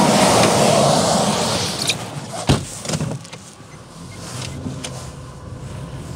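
A semi-trailer truck passing close by on the road, loud at first and fading over the first two seconds. About two and a half seconds in there is a single sharp knock, a car door shutting, and then a Renault Duster's engine runs quietly as the car pulls away.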